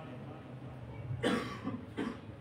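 A man's single short cough a little over a second in, picked up close on the microphone in front of his mouth.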